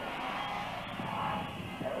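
Engines of four 500 cc single-cylinder speedway bikes running hard together as they leave the start gate, a dense drone that swells about halfway through.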